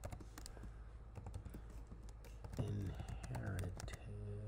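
Typing on a computer keyboard: a string of quick, irregular keystrokes as a short line of text is entered.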